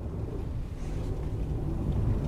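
A low, steady rumble of background noise with no speech.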